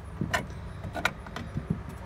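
A few short, light clicks over a low steady hum.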